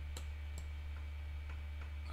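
A few faint, sparse clicks from a computer mouse as the chart is zoomed, over a steady low hum.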